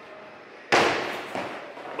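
A climber landing on a padded bouldering crash mat: one sudden heavy impact about three-quarters of a second in, fading over about a second.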